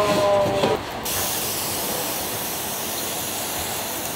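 Stainless-steel pump sprayer misting liquid in one long, steady hiss that starts about a second in.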